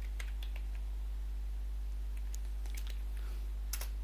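Computer keyboard keys clicking in a scattered run of separate keystrokes, with two louder clicks close together near the end. A steady low electrical hum runs underneath.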